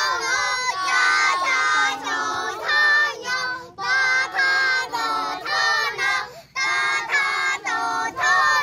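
Several young children singing a song of praise to God together, in sung phrases broken by short pauses.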